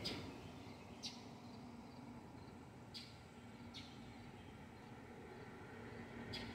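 Quiet outdoor background with a few faint, short bird chirps, about one, three and nearly four seconds in.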